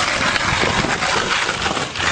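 Skateboard wheels rolling on an asphalt path, a steady rough rolling noise with faint small clicks.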